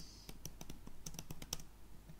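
Typing on a computer keyboard: a quick, irregular run of keystroke clicks as a few words are typed.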